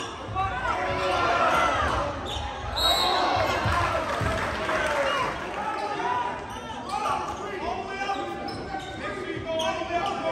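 A basketball bouncing on a hardwood gym floor, with the overlapping voices of players and spectators echoing in the large gym.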